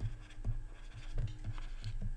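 Faint scratching and light taps of a stylus on a tablet as a few words are handwritten.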